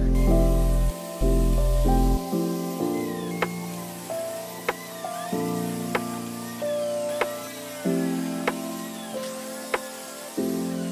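Background music: held low notes that change every second or so, with a sharp click about every second and a quarter.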